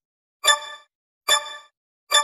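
A bell-like chime rung twice, about a second apart, each note ringing out briefly, with silence in between.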